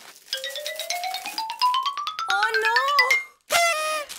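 Suspense sound effect added in editing: a rising tone with rapid ticks that speed up over about three seconds, then a brief bright tone after a short gap.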